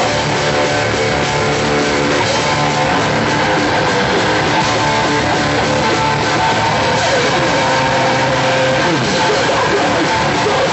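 A hardcore band playing live: distorted electric guitars and drums at a steady, loud level.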